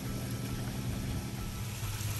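A steady low mechanical hum, like a motor or engine running, over a faint hiss.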